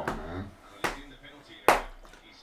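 Two sharp plastic clicks about a second apart from a large plastic water bottle being handled and opened before a drink.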